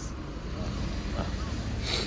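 Steady low hum of a car engine idling, with faint voices in the background.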